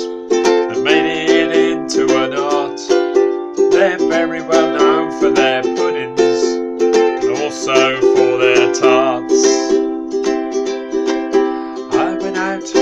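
Ukulele strummed in steady chords, with a man's voice singing along at times.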